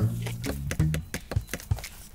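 A rapid run of hammer taps, several a second, over background music with a steady low bass.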